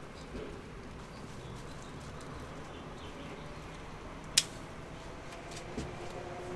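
Hop cones being picked by hand from the bine, with one sharp click about four seconds in. Birds call faintly in the background.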